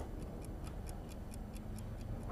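A clock ticking evenly and quickly, about four to five faint ticks a second, over quiet room tone.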